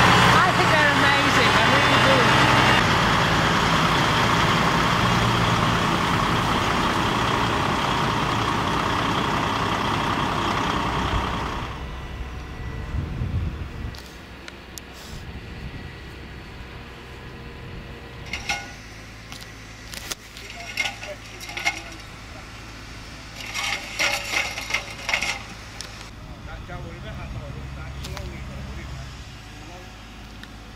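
DAF heavy-haulage truck's diesel engine running close by, loud and steady, for about the first twelve seconds. Then the sound drops suddenly to a quieter low hum with a few short bursts of distant voices.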